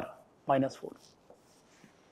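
Marker pen writing on a whiteboard in a few faint, scratchy strokes, with a short spoken syllable about half a second in.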